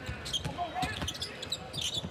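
Basketball being dribbled on a hardwood court during live play, with scattered short squeaks and faint voices in the background.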